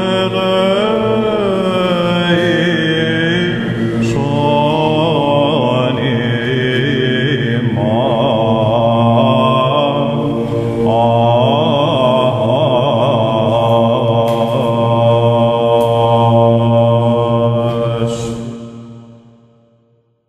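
Greek Orthodox Byzantine chant in the Grave (Varys) diatonic mode: male chanters sing a long melismatic line on 'eleison imas' over a steady held drone (ison). The chant fades out near the end.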